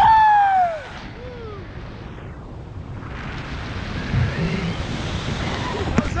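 A man's loud falling whoop of excitement lasting under a second, then a shorter one, followed by steady wind rushing over the microphone under the parachute.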